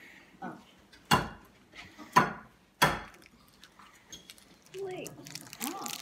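Three sharp clacks of a plastic Easter egg knocked against a ceramic plate, as if cracking a real egg, about a second apart. A child's voice follows near the end.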